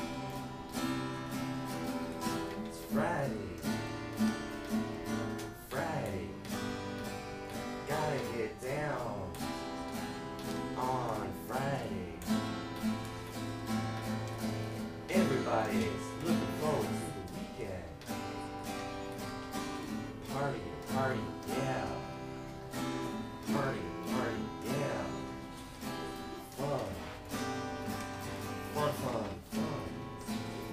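Instrumental passage of a small acoustic band: two acoustic guitars strumming chords over a plucked electric bass line, with no singing.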